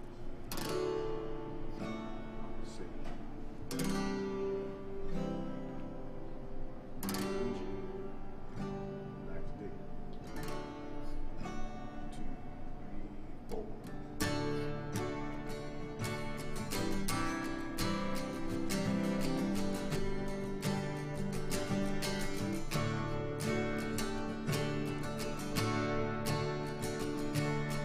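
Two steel-string acoustic guitars played together in a jam. It opens with spaced, ringing chords, and from about halfway through the strumming turns busier and denser.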